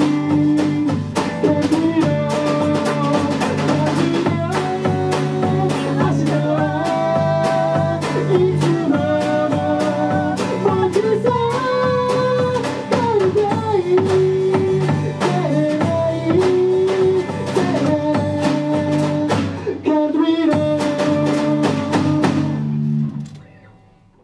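Acoustic band playing: a male voice singing over strummed acoustic guitar with a drum kit keeping time. The music fades out near the end.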